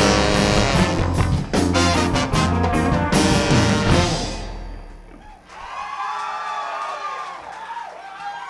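Live band with a brass section of trumpets and trombone over electric guitar and drums playing the last loud bars of a song, which stop about four seconds in and ring away. Then the audience cheers, with rising and falling whoops and whistles.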